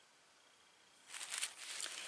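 Near silence, then from about a second in soft rustling and scraping with small clicks as the glass bottle is shifted and turned on the paper-covered work surface.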